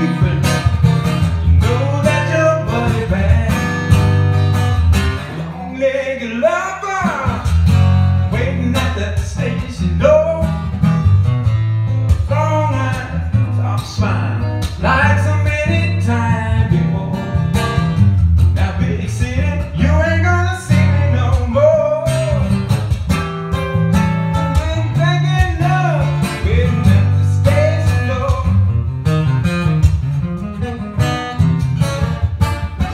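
Solo acoustic guitar strummed and picked in a blues style, with a man's voice singing over it. The guitar's low notes drop out briefly about five seconds in.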